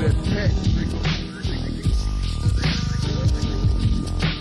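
Slowed-down, screwed hip-hop beat playing with no rapping: heavy bass and drum hits under a sustained musical backing.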